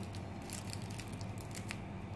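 Faint handling noises: scattered light clicks and crinkles of a plastic-wrapped chocolate being pressed into place on a glued craft form, over a low steady hum.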